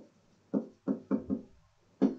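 Stylus tapping on a tablet while writing: four short soft knocks starting about half a second in.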